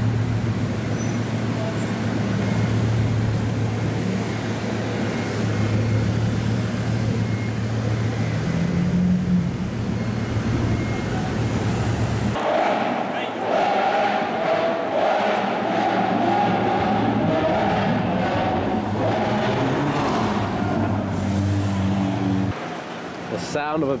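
Bugatti Veyron's quad-turbo W16 engine running at low speed with a steady low hum as the car creeps along. About halfway through the hum cuts off abruptly and street noise with indistinct voices takes over.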